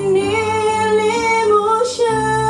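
A woman singing into a microphone over backing music, holding a long sustained note that wavers slightly and lifts near the end of the phrase.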